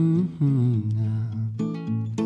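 Male singer humming wordless notes over acoustic guitar, the voice sliding down in pitch about half a second in and picking up a new note near the end.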